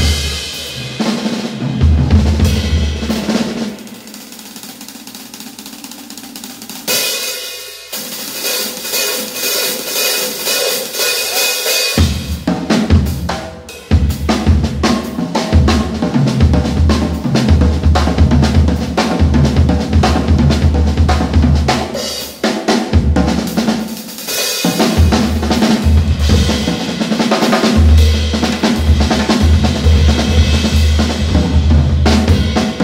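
Jazz drum kit solo: rolls and heavy strokes on toms and bass drum with snare and cymbals. Around four seconds in it drops to soft playing, a bright cymbal wash builds from about seven seconds, and full, dense tom and bass-drum playing returns from about twelve seconds.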